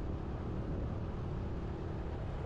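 A steady low rumble with a faint hum, even throughout.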